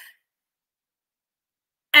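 Near silence: a dead-quiet pause between spoken phrases, with a woman's voice starting again at the very end.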